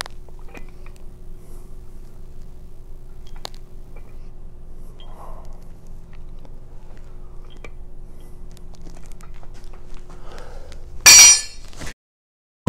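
Quiet room tone with a steady low hum and a few faint knocks while the EZ bar is curled, then about eleven seconds in a brief, loud metallic clatter with a ringing edge, which cuts off abruptly.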